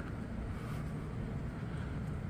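Steady outdoor background noise, a low even rumble with no distinct event standing out.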